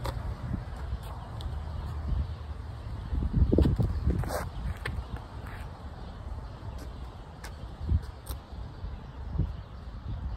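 Wind buffeting the microphone as a steady low rumble, swelling louder for about a second around the middle, with a few faint clicks.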